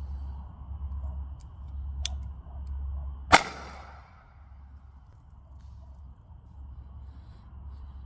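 A single shot from a Ruger .22 pistol firing a number three nail-gun blank, launching a golf ball off the muzzle: one sharp crack a little over three seconds in, with an echoing tail. A faint click comes about a second before it.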